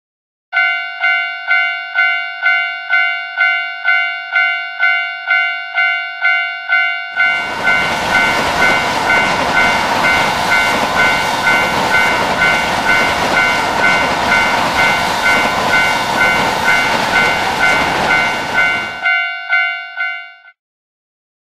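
Japanese level-crossing warning bell ringing about twice a second, with the barrier coming down. From about seven seconds in, the rushing noise of a passing Shinkansen E4 series MAX train joins it for about twelve seconds and then cuts off, while the bell goes on ringing.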